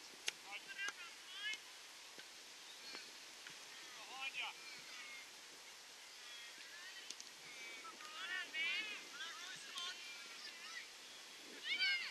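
Distant children's voices shouting and calling across an open playing field in short, high-pitched bursts, with the loudest calls a few seconds in, around the middle, and near the end.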